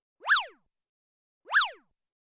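Editing sound effect: two short, identical electronic chirps about a second apart, each sweeping quickly up in pitch and straight back down, over otherwise dead silence.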